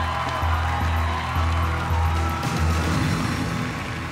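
Music with a pulsing bass line, roughly two beats a second, under held higher notes.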